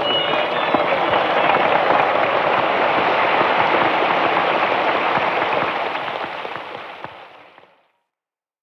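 Concert audience applauding and clapping as a song ends, recorded from among the crowd on an amateur tape. The applause fades out over the last couple of seconds.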